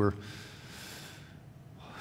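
A man drawing a breath between spoken phrases: a soft hiss of under a second.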